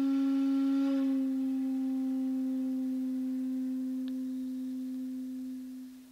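Shakuhachi holding one long low note at a steady pitch. Its bright upper overtones fall away about a second in, and the note then softens and fades out near the end.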